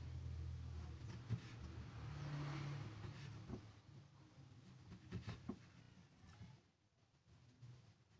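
Kitchen knife slicing thin pieces from a block of tempeh on a wooden cutting board: a few faint soft taps of the blade meeting the board, over a low background hum that fades out.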